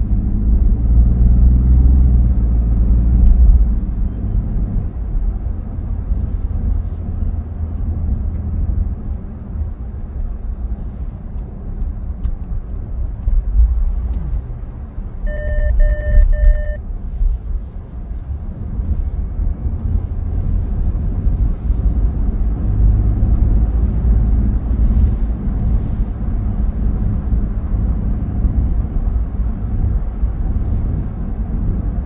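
A car driving along a city street, heard from inside the cabin: a steady low rumble of engine and tyres on the road. About halfway through come three short, evenly spaced beeps.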